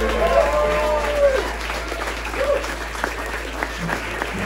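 Audience applauding at the end of a live bluegrass tune, with a few voices calling out near the start and again about halfway through.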